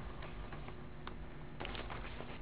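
Quiet room tone in the council chamber: a steady low hum with a few faint, irregular clicks and ticks.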